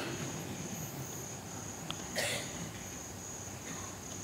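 Crickets chirping in a faint, steady, high trill, with a brief soft noise about two seconds in.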